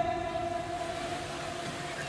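Faint, steady ringing tones from the microphone and loudspeaker system, slowly fading, with no voice over them.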